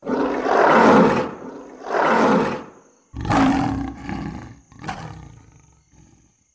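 A recorded animal roaring: about five rough roars, the first the longest and loudest, the later ones shorter and fainter.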